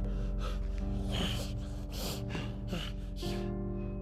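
Background film music holding sustained notes, with a person's short gasping breaths coming again and again over it.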